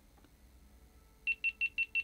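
GoPro Hero 11 Black's low-battery warning: a quick run of short, high beeps, about six a second, starting a little over a second in, as the battery runs flat and the camera shuts down.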